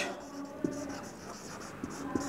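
Marker pen writing on a whiteboard: a quiet run of short strokes as a word is written.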